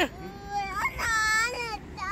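A young child crying: a first wail, then a louder, higher wail held for about half a second.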